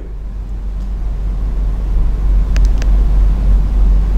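A loud, steady low rumble with a faint hiss above it, growing slightly louder, with two faint clicks a little past halfway.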